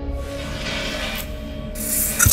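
Hardstyle mix in a breakdown: held synth notes under a hissing noise sweep, with no kick drum. The sound grows louder toward the end as it builds back to the beat.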